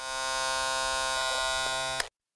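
Steady electronic buzzing drone, rich in overtones and held at one pitch, played as the sound of a logo intro.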